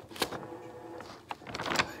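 A sheet of notebook paper rustling and crinkling as it is handled and waved, in a few short strokes, with more of them near the end.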